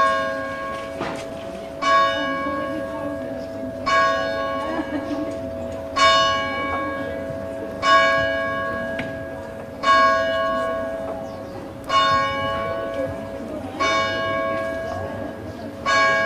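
A single church bell tolling slowly and evenly, one strike every two seconds at the same pitch, each stroke ringing on and its hum overlapping the next.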